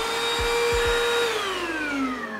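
Deerma handheld dust mite vacuum's motor running with a steady whine, then winding down, its pitch falling steadily from a little past halfway through.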